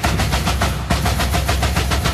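Classic techno at about 140 BPM: a dense, rumbling sustained bass under fast, steady percussion.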